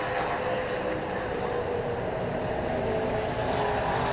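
Stock car engines droning steadily, several pitches held together.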